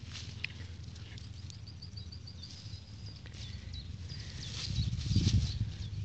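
Grass and weeds rustling as a hand pushes them aside close to the microphone, with scattered small crackles and a loud swell of rustling and handling noise near the end. A high, rapid series of short chirps sounds in the background early on.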